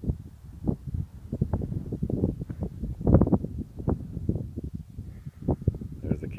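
Wind buffeting the phone's microphone in uneven gusts, a rumbling, irregular blustering on an exposed summit.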